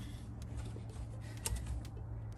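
A low, steady background rumble with a few faint clicks, the last two as a hand reaches for and grips the cap of a 2-litre plastic Coca-Cola bottle.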